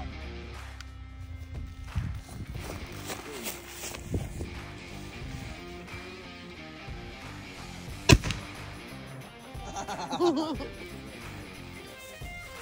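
A small black powder cannon on a wooden wheeled carriage fires once, a single sharp boom about eight seconds in. Background music with a guitar plays underneath.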